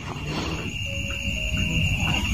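Background ambient drone: a low rumble under a steady high-pitched whine, with two faint held tones about a second in.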